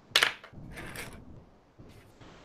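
Plastic pens and markers clattering against each other on a desk as a hand picks one out of the pile: a sharp clack, then a softer rattle about a second in.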